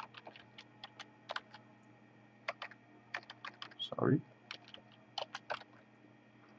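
Typing on a computer keyboard: irregular runs of keystroke clicks in several short bursts, with a brief murmur of voice about four seconds in.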